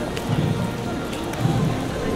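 Band music, muffled under a steady rushing noise, with a low note recurring about once a second.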